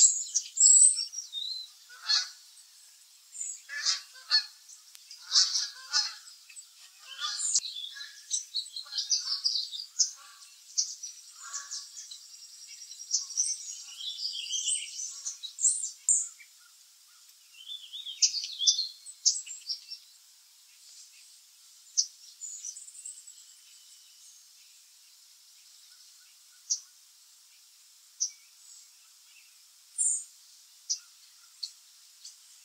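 Small birds chirping, with short high-pitched calls crowded close together for about the first twenty seconds, then thinning to a few isolated chirps.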